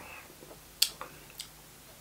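A few soft mouth clicks and lip smacks while a sip of beer is tasted: one sharp click a little under a second in, then two fainter ones.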